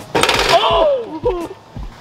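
A loud wordless shout that falls in pitch, over a basketball bouncing on asphalt about twice a second.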